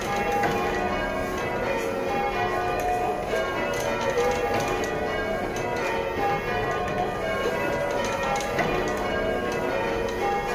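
Church tower bells rung full-circle in change ringing: a steady, continuous succession of bell strikes, heard from the ringing room below the bells.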